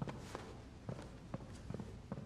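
Footsteps of two people walking across a wooden floor, a slightly uneven run of soft knocks, about two to three a second.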